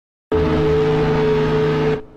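A ship's horn sounding one loud, steady blast of several tones at once. It starts suddenly just after the start and is cut off near the end.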